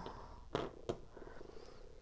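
Quiet room tone with two faint, light clicks a little under half a second apart, as a plastic Lego Technic gear is set down on a tabletop.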